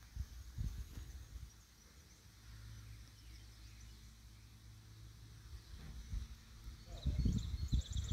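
Outdoor ambience: a low wind rumble on the microphone and footsteps as the camera is carried along, the steps heavier near the end. Birds chirp faintly near the end.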